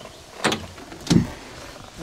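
Two brief scraping handling noises from solar panel cables and their connector being worked by hand, the second louder.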